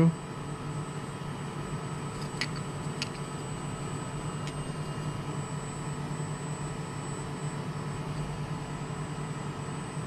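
Steady low hum with a faint constant whine from a powered-on high-temperature 3D printer's fans and electronics. Two faint clicks about two and a half seconds in, half a second apart.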